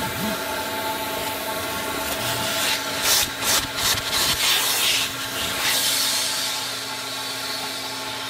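Carpet extractor running with a steady motor whine while its wand nozzle scrapes and sucks across car floor carpet in several quick strokes around the middle. The motor then runs on alone, getting a little quieter near the end.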